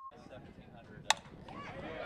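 A softball bat striking the ball: one sharp crack about a second in, over faint ballfield ambience.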